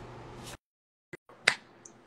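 Faint room noise cuts to dead digital silence for about half a second, broken by a few short clicks, the sharpest about one and a half seconds in. This is the live stream's audio dropping out while a guest is being connected.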